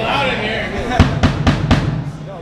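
Rock drum kit struck live: a quick run of about five snare and bass drum hits starting about a second in, the first the loudest, leading the band into a song.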